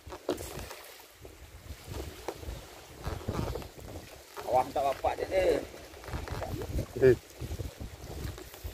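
Wind buffeting the microphone as an uneven low rumble, with indistinct voices calling out about halfway through and briefly again near the end.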